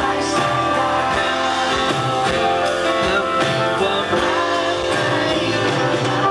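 Live pop song: a male vocalist singing into a handheld microphone over guitar accompaniment, steady and continuous.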